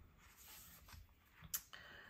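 Near silence with faint handling of paper as the collage folio is moved on to the next page, and one short soft tap about one and a half seconds in.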